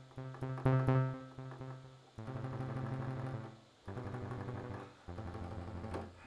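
Buzzy sawtooth-wave synth notes from SuperCollider, played live from a MIDI keyboard controller, low in pitch and softened by a 1500 Hz low-pass filter. A quick flurry of notes comes first, then three longer low notes one after another.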